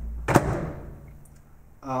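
Samsung microwave oven door shut with a sharp knock about a third of a second in, followed by a faint steady low hum.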